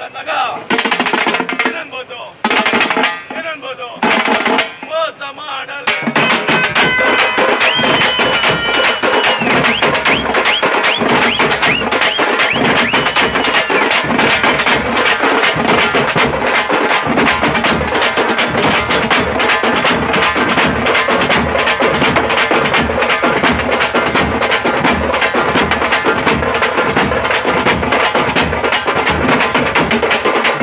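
A tamate drum band playing: large bass drums and frame drums beaten with sticks. For the first few seconds the beats come in short broken bursts, then about six seconds in they lock into a fast, continuous, dense beat.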